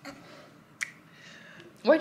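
One sharp click a little under a second in, against a quiet room, with a woman starting to speak near the end.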